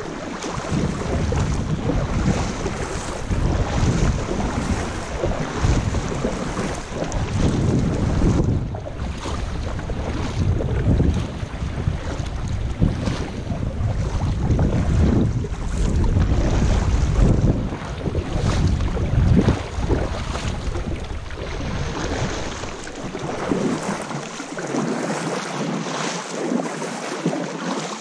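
Wind buffeting the microphone in a heavy, uneven rumble over the splash and wash of water as a kayak is paddled along a rocky shore. The wind rumble drops away about four-fifths of the way through, leaving the water sounds.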